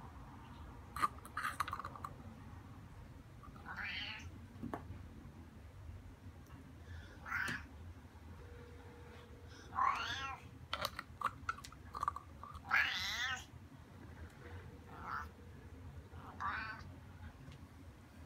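Domestic cat meowing repeatedly, about six separate meows a few seconds apart, the longer ones wavering in pitch. A few light clicks fall between the calls.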